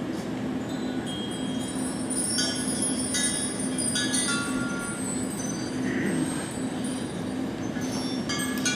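Scattered high, chime-like ringing tones, several overlapping, over a low steady hum.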